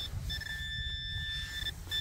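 Metal detecting pinpointer giving a steady high-pitched tone, signalling a metal target close to its tip in the dug soil. The tone breaks off briefly just after the start and again near the end.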